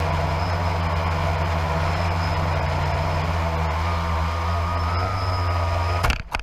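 A vehicle engine running loud and steady at an even speed, with a faint whine that rises slightly about four seconds in.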